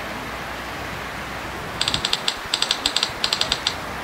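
Steady rush of river rapids, then from about halfway in a quick run of typewriter key clacks lasting about two seconds, the sound effect for a typed-out title.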